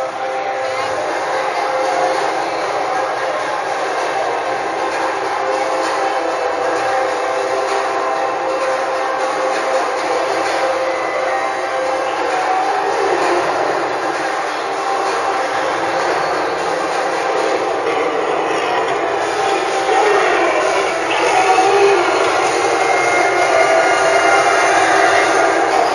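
Steady, loud din of a parade crowd lining the street, mixed with the sound of parade vehicles and floats passing close by.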